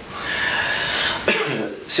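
A person coughs: a rasping, noisy cough lasting about a second, followed by a short voiced sound.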